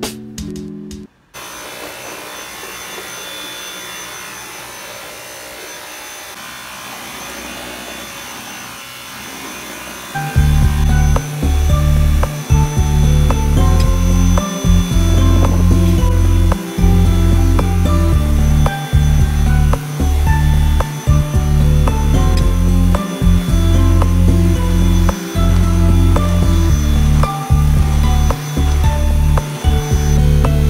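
Dyson cordless stick vacuum running steadily, a even rush of suction with a thin high motor whine. About ten seconds in, loud background music with a heavy beat comes in over it.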